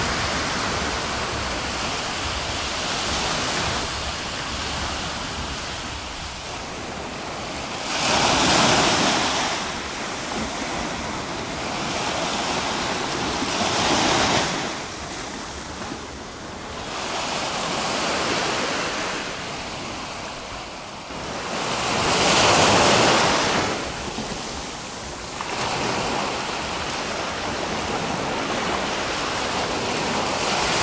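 Small Mediterranean waves breaking and washing up a sandy beach: a steady wash of surf that swells and fades every several seconds, with the biggest surges about a third of the way in and again past two-thirds.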